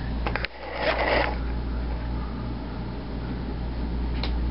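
Steady low hum, with a few quick clicks and then a short rush of noise about a second in.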